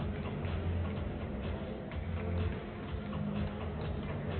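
Several basketballs bouncing irregularly on a hardwood court, with background music that has a steady bass under them.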